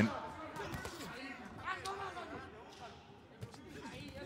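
Quiet boxing-hall ambience: faint distant voices and a few soft thuds and taps from the ring.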